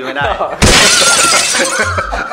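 A sudden loud crash of noise starts abruptly about half a second in and fades away over the next second and a half, over a man talking.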